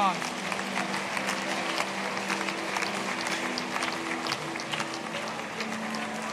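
A congregation praying aloud all at once, many voices blending into a steady murmur with scattered claps, over a held musical chord that shifts a couple of times.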